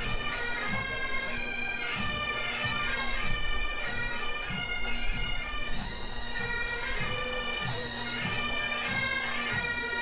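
Pipe band playing a march: a bagpipe melody over a steady drone, with drum beats underneath.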